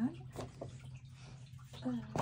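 Paper magazine cut-outs rustling and tapping faintly as they are handled, a few short rustles about half a second in, over a steady low hum.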